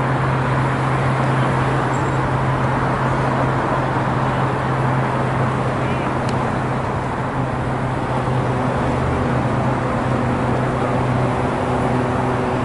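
Steady urban traffic noise, a constant rush with a low hum underneath that fades near the end.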